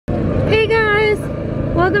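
Steady low rumble of city street traffic, with a high voice heard over it about half a second in and a spoken word near the end.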